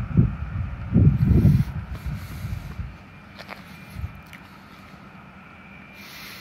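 Outdoor street ambience: a low, gusty rumble for the first half, then a quieter steady background with a faint high hum.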